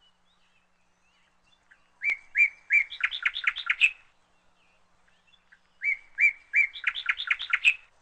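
A small bird singing the same song phrase twice: a few separate whistled notes running into a quick series of notes, each phrase about two seconds long with a pause between.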